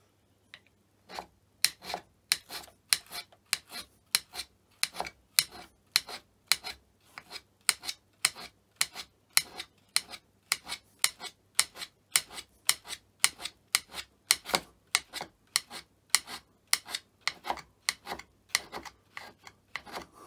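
Hand scraper cutting the cast-iron underside of a Myford Super 7 tailstock base in short, quick strokes, about two to three a second, starting about a second in. The strokes take down the high spots to bring the base flat.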